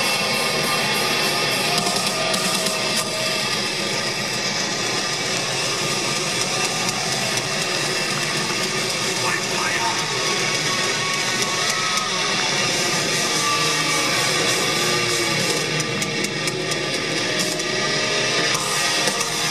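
A heavy metal band playing live at stadium volume: distorted electric guitars and drums, loud and without a break, recorded from within the crowd.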